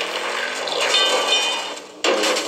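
Movie sound effects of a car sliding in a smoky skid: tyre squeal and engine over a dense rush of noise that fades near the end, played back from a screen.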